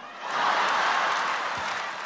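Audience laughing and applauding after a punchline, swelling about half a second in and then slowly tapering off.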